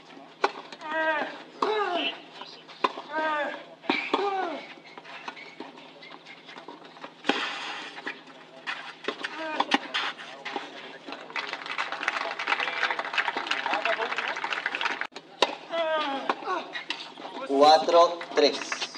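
Tennis match on a clay court: voices call out in the first few seconds, then sharp racket-on-ball strikes in a rally. After the point, a small crowd applauds for about four seconds.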